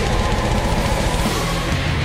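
Symphonic death metal band playing live at full volume: a dense, unbroken wall of distorted guitar, bass and drums.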